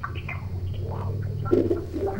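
Open telephone line on air: a steady low hum with faint, garbled fragments of a caller's voice, too distorted to be understood, typical of the caller's TV being left on and mixing into the line.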